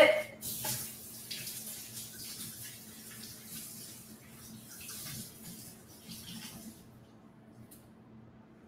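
Kitchen faucet running water over a bunch of cilantro as it is rinsed in the sink; the water shuts off about a second before the end.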